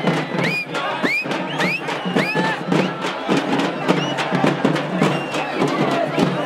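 Large crowd cheering and shouting, with many short rising high whoops over a fast, steady drumbeat.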